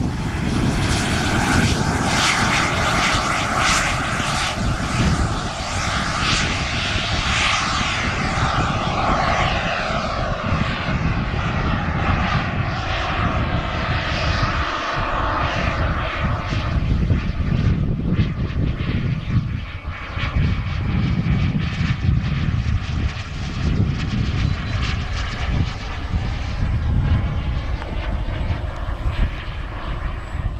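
Turbine engine of a King Cat RC model jet running at power on the takeoff roll and then in flight: a steady jet roar with a whine whose pitch glides up and down as the jet moves about and the throttle changes.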